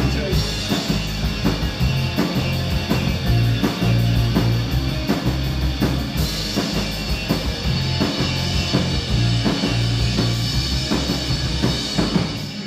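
Live rock band playing an instrumental passage without vocals: drum kit keeping a steady beat under electric bass and two electric guitars.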